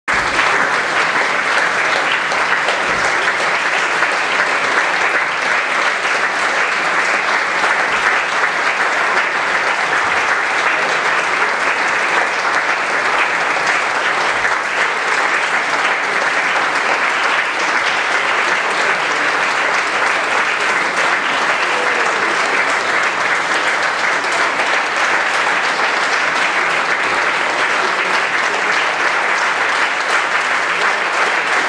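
A large audience applauding: dense, steady clapping that holds at one level throughout.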